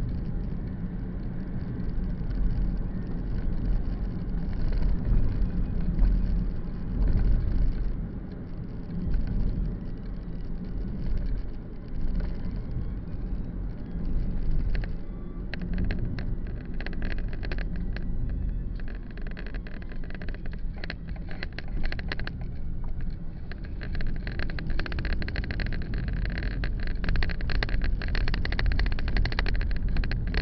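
Engine and road noise of a car driving slowly, heard from inside through a cheap dashcam microphone: a steady low rumble that swells and eases. From about halfway in, quick rattling clicks join it.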